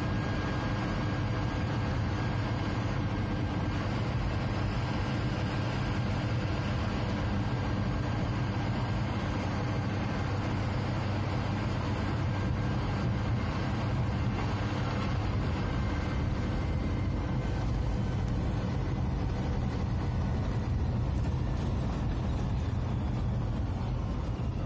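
Ashok Leyland 180 HP truck's diesel engine running steadily at cruising speed, heard from inside the cab as an even low drone with road noise.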